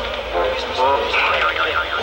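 People's voices talking and calling out, over a steady low rumble.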